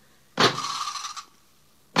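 A single heavy metallic clank, about half a second in, that rings on for under a second: a radio-drama sound effect of a giant robot's footstep.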